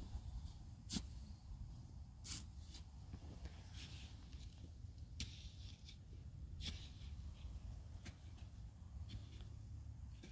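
Quiet outdoor background: a faint steady low rumble with a few soft clicks and rustles scattered through it.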